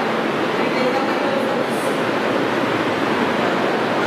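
Steady, even rushing noise with no clear voice over it.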